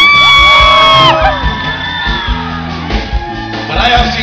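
A loud, high-pitched scream held for about a second, so loud that it distorts, over the band's quiet sustained backing chords. Fainter shouts follow.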